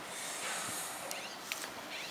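A faint hiss through the first second, with a few light clicks of steel surgical instruments (a rib spreader and probe) working in a bird's incision.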